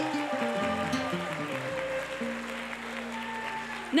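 Soft live worship-band music, held keyboard chords over a bass line that moves through several notes and then settles on one sustained low note about halfway through.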